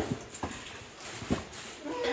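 Footsteps on stone stairs: a few separate steps, about a second apart.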